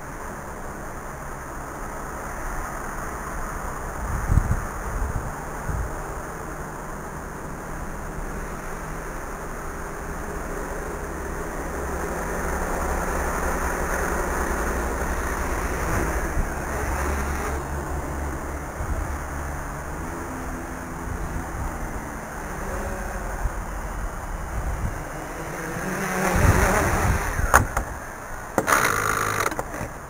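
Small RC quadcopter's electric motors and propellers buzzing as it flies overhead, growing louder as it comes close, with wind on the microphone. A few knocks near the end as it comes down to land.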